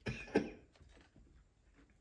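A man's short cough, two sharp bursts about a third of a second apart, right after a sip of bourbon.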